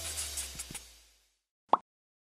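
The tail of upbeat background music dies away over the first second into silence, then a single short plop sound effect sounds near the end.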